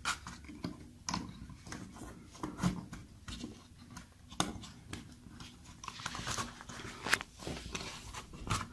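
Irregular small clicks and handling rustle as thermostat wires are pushed into the push-in terminal connectors of a Nest Learning Thermostat base, the terminal buttons pressing down as each wire goes in.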